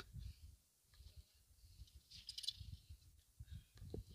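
Near silence: faint low rumbling background noise, with a brief soft hiss a little past the middle.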